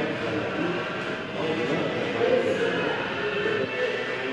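Indoor hall ambience: indistinct voices murmuring over a steady drone.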